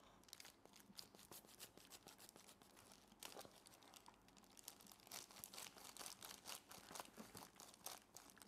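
Faint, irregular crinkling and rustling of thin plastic disposable gloves as gloved hands rub together and pull at the plastic.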